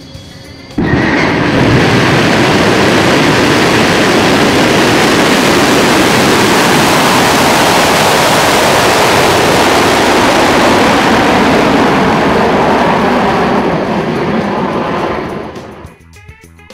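SpaceX Falcon rocket engines at ignition and liftoff: a loud, steady roar that starts suddenly about a second in and fades out near the end.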